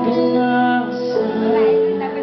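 Live band music with a singer's voice, holding a long sustained note from about halfway through.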